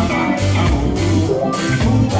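Live roots reggae band playing, with a deep, prominent bass line under drum kit and guitar.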